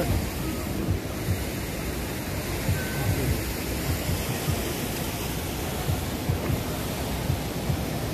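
Steady wash of outdoor street and crowd noise at a busy food-stall alley, with an uneven low rumble and faint voices in it.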